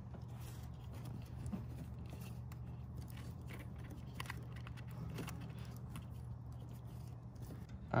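Faint scrapes and light clicks of a hand working a loosened bolt free on a diesel fuel filter housing among the engine-bay hoses and wiring, over a steady low hum.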